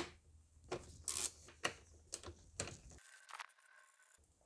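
A hand ratchet with an E8 Torx socket undoing the bolts on an intake hose: a handful of separate, irregularly spaced metallic clicks and taps.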